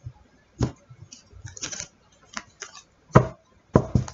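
A deck of tarot cards being cut and handled by hand: a few separate sharp taps and clicks of the cards, the loudest two about three seconds in, with short card rustles between.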